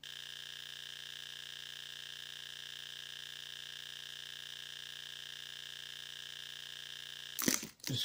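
A steady hum of several fixed tones starts abruptly and holds unchanged. A short burst of noise comes near the end.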